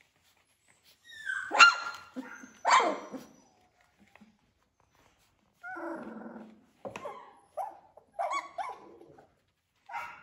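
Three-week-old Labradoodle puppies yipping and giving small high-pitched barks, two loud ones early on and a run of shorter yips near the end, with a lower whine in between.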